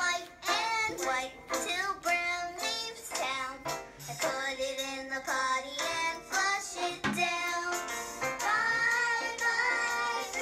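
A children's song playing: a child's voice singing over a backing track.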